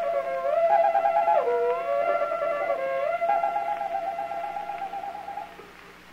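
Solo violin playing a caprice, its notes joined by slides, with a quick trill about a second in, then a long trilled high note that fades away near the end.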